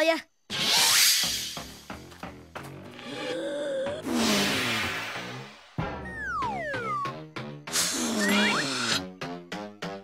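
Cartoon soundtrack: fast background music with sound effects laid over it. There is a sudden burst of noise about half a second in that dies away over a second or so, and falling whistle glides around six seconds in.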